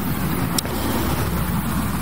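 Steady low background rumble and hiss, with a faint click about half a second in.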